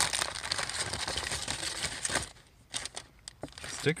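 Paper and packaging rustling and crinkling as items are handled in a box, dense for about two seconds, then dropping to a few light ticks and taps.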